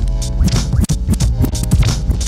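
Hip-hop beat with turntable scratching: quick, choppy record scratches over a bass-heavy loop.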